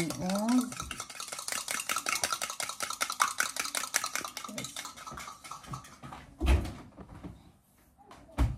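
Spoon stirring in a cup, clinking rapidly against the sides for about five seconds. A single dull thump follows near the end.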